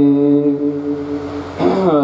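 Gurbani kirtan: a harmonium holds a steady drone chord in a pause between sung lines. Near the end, a male voice glides upward into the next line of the hymn.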